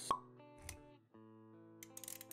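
Motion-graphics sound effects over background music: a short, sharp pop just after the start, then a softer low thud. Held musical notes come back in about halfway through.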